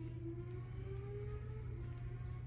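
Quiet, steady low hum, with a faint drawn-out tone held above it.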